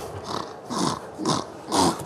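A sleeping person snoring roughly, one short snore about every half second.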